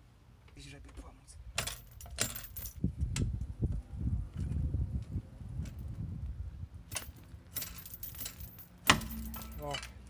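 Steel chain rattling and clinking against a steel wheel and a metal bar as it is handled, in bursts, with one sharp metallic clank near the end. This is a chain-and-bar rig being set up to lever a wheel stuck on its hub.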